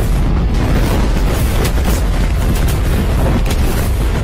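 Film action sound effects: booming explosions over a heavy, continuous low rumble, with several sharp blasts scattered through, and music underneath.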